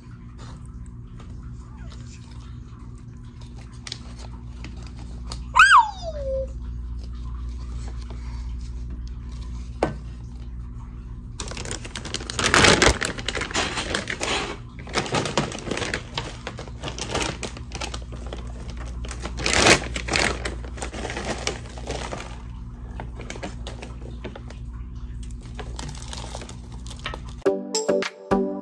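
Chunky orchid bark chips poured from a plastic bag into a plastic pot, rattling in several pours over about ten seconds starting around halfway in. A steady low background hum runs throughout, and there is a single short falling squeak about six seconds in.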